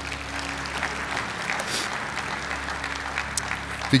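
Congregation applauding steadily.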